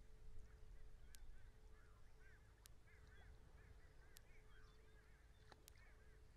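Faint birds calling: a steady stream of short, arched chirps, over a low background rumble and a faint steady hum.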